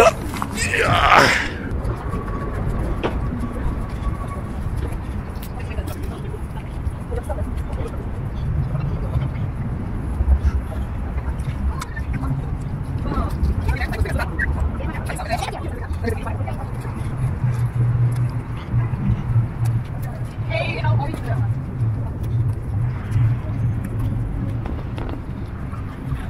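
Outdoor traffic ambience: cars going by on a road with a continuous low rumble, a steadier low hum coming in about two-thirds of the way through, and brief faint voices now and then.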